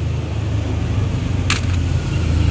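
A steady low rumble that slowly grows louder, with one sharp click about one and a half seconds in.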